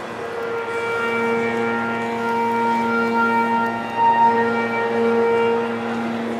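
A wind band of saxophones and brass holding one long sustained chord, swelling a little about four seconds in.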